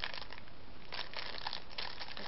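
Clear plastic packaging crinkling and crackling irregularly as it is handled.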